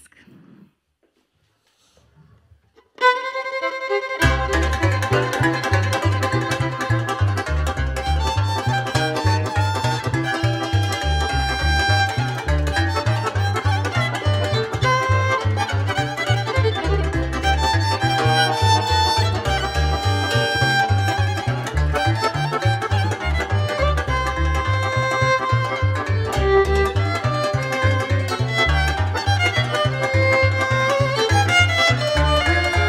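After about three seconds of near silence, a violin comes in sharply and leads a traditional Romanian lăutar band, with a plucked double bass joining a second later on a steady beat underneath.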